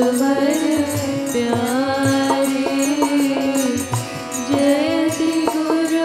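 Devotional kirtan chanting: voices sing a slow melody of held, gliding notes over a harmonium, with a steady beat of hand percussion.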